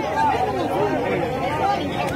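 Several people talking over one another at once, a steady babble of overlapping voices with no single voice standing out.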